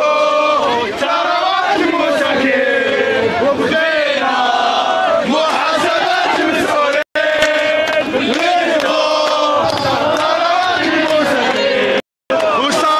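Large crowd of protesters chanting and shouting together in unison. The sound cuts out for an instant about seven seconds in.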